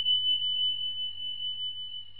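A single high, pure tone held at one pitch and slowly fading, an editing sound effect laid under a title card, with a faint low hum beneath.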